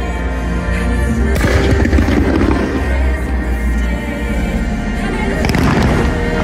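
Loud fireworks-show music with fireworks going off over it: a crackling burst about a second and a half in and another near the end.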